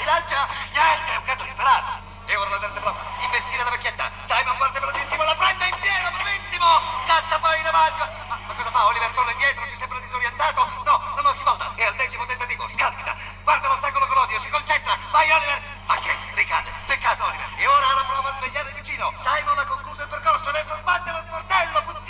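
Continuous speech throughout, over a steady low hum; no other distinct sound stands out.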